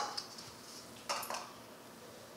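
Small glass prep bowls knocking lightly against glass as green peas are tipped into a glass mixing bowl: two quick clinks about a second in.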